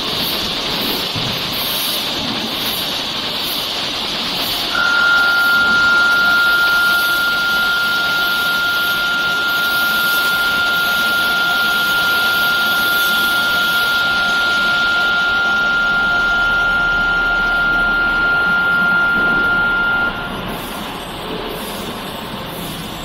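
Wire layer rewinding machine running, spooling submerged arc welding wire onto a coil with a steady mechanical noise. A single steady high tone starts abruptly about five seconds in and cuts off a couple of seconds before the end, when the overall sound drops a little.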